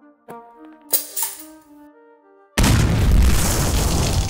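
Light music with a couple of short clicks, then a loud dynamite explosion cuts in suddenly about two and a half seconds in and keeps rumbling on.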